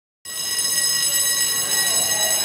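Electric alarm bell (school bell) ringing steadily, starting a moment in.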